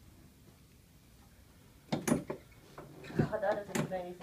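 A chiropractic thrust on the lower back with a short, sharp crack or clunk about halfway in, followed by voices.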